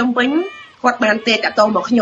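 Only speech: a voice talking in Khmer, with a short pause about half a second in.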